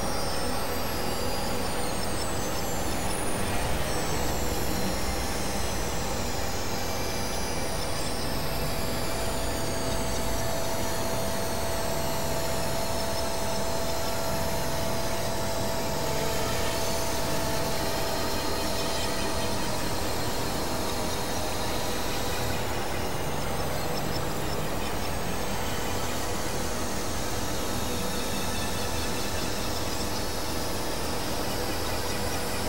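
Experimental electronic noise music: a dense, steady wash of hiss and drones, with high sweeps falling in pitch every couple of seconds and a held mid-pitched tone through the middle.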